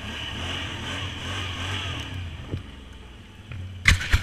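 Can-Am Outlander ATV engine running at low speed, its note rising and falling a little with the throttle and easing off for a moment after a knock about two and a half seconds in. A few loud, sharp knocks close to the microphone come near the end.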